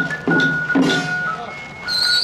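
Temple-procession music: loud beats about twice a second under a steady high held tone.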